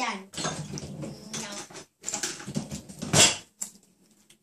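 Young children's voices and laughter that the recogniser didn't write down, with a loud, short sound about three seconds in.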